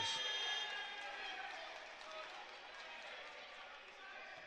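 Basketball arena ambience: crowd murmur and a ball being dribbled on the hardwood court. A high, steady tone ends about half a second in, and the crowd noise slowly fades.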